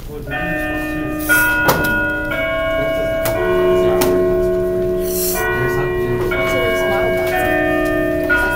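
A bell-like chime melody: held ringing tones, a new note or chord about once a second. A few sharp knocks come near the start and middle, and there is a brief hiss about five seconds in.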